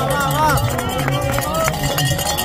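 Crowd of spectators shouting and cheering runners on, many voices overlapping.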